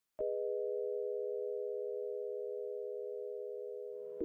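Electronic soundtrack opening on a sustained chord of three pure, steady tones, starting with a click just after the start and slowly fading.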